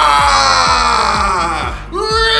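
A man's long, drawn-out yell, slowly falling in pitch and breaking off just before the end, when a second yell begins, over background music with a steady beat.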